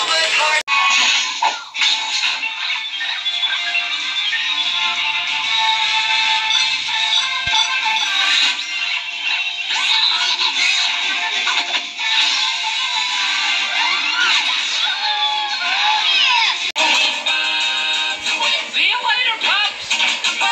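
Children's cartoon soundtrack: music with sung and spoken character voices, playing through a screen's small speaker with little bass. The audio changes abruptly twice, shortly after the start and about three seconds before the end, as the clips cut.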